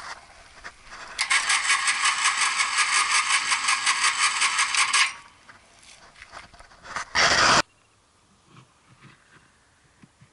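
Drive motor of a homemade earth-auger rig running for about four seconds with a high-pitched, fast-pulsing whir as it turns a 200 mm auger into clay soil. A short, very loud rumbling noise follows about seven seconds in.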